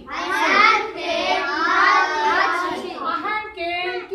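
A class of young schoolchildren reciting a phrase together in a loud, sing-song chorus.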